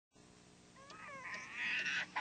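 A baby crying: a wavering, wailing cry that starts faintly about a second in and grows louder toward the end.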